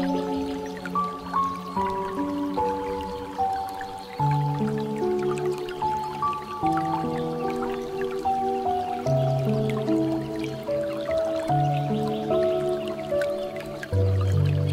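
Slow, soft piano music in held chords, over the dripping and trickling of water from a bamboo fountain spout.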